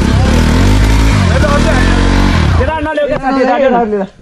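Motorcycle engine revving close by, its pitch climbing, holding and falling back before it drops away about two and a half seconds in. A voice follows in the last second.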